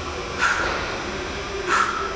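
Two short, sharp breaths out about a second apart, one with each twist of a medicine ball during a seated oblique exercise, over a steady low hum.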